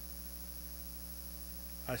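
Steady electrical mains hum, a low, even buzz with several overtones, in a pause between words. A man's voice starts just before the end.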